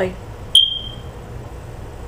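A single high-pitched chirp about half a second in, starting with a sharp click and fading away within half a second.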